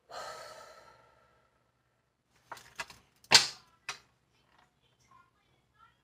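A person's big breath: one loud, short, breathy rush about three seconds in, after a softer fading breath at the start. A few faint clicks sound around it.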